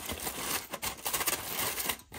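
Aluminium foil crinkling as it is pressed and folded by hand around a motorcycle's exhaust pipe and catalytic converter: a continuous run of irregular crackles.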